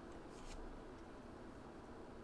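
Quiet room tone with one faint, brief rustle about half a second in.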